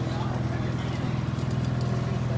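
Boat engine running with a steady low hum.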